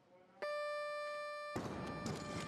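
Weightlifting down-signal buzzer: a steady electronic beep of about a second that tells the lifter the jerk is held and she may lower the bar. The instant it cuts off, a sudden loud burst of noise follows.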